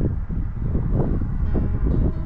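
Wind rumbling on the microphone. Faint background music comes in about a second and a half in.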